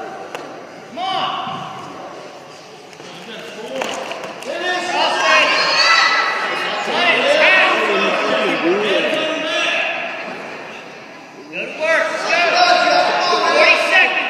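Spectators and coaches shouting, several raised voices overlapping and echoing in a gym, with no clear words. There is a brief thump about four seconds in.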